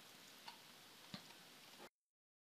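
Near silence: quiet room tone with two faint clicks, then the sound cuts out completely just before the end.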